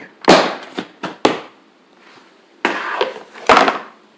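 Plastic storage tub lid being handled and lifted off. A loud knock comes about a quarter second in and two sharp clicks around a second, then two short scraping rustles near the end.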